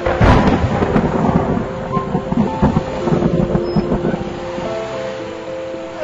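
Thunder: a sudden loud crack right at the lightning flash, followed by rolling rumbles that die away about four seconds in, over sustained background music notes.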